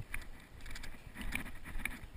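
Wind rumbling on the microphone of a head-mounted action camera, with a few light clicks and knocks as the wearer walks.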